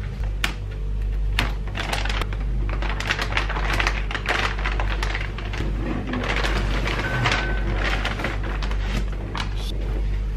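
Thin plastic bag crinkling and rustling, with small clicks and knocks of a hard clear plastic toy stadium being handled as it is slid out of the bag. A steady low hum runs underneath.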